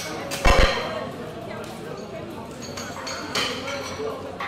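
Metal clank of a barbell's collars and weight plates as loaders handle them on the bar: one loud ringing clank about half a second in and a lighter click near the end.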